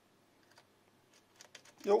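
A few faint, light clicks of a banana plug and clip test leads being handled at a bench power supply's output terminal, coming more quickly near the end, against a quiet room.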